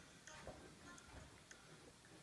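Near silence: quiet room tone with a few faint, light ticks.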